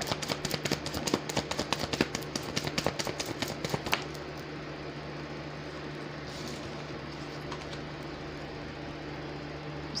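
Rapid clicking of a tarot deck being shuffled, about six clicks a second, which stops about four seconds in. After it a steady low hum remains.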